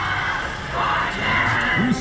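Steady din of a casino floor: a wash of slot machine sounds and background music with crowd chatter, a voice coming in near the end.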